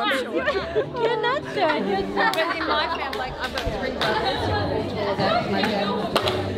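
Chatter of several people talking at once in a large hall, voices overlapping with no one voice standing out.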